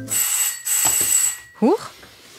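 An electric doorbell rings harshly for about a second and a half, then stops, announcing someone at the door, most likely another parcel delivery. A startled "Huch" follows.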